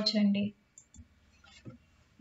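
A woman's voice ends a sentence about half a second in, then a pause of near silence with a few faint, short clicks.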